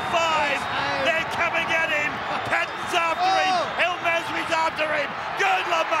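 Male TV commentator's voice over steady stadium crowd noise.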